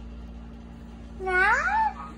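A baby's single rising, squeaky coo just over a second in, over a faint steady hum.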